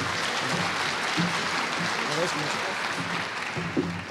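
Audience applauding steadily, with faint voices underneath.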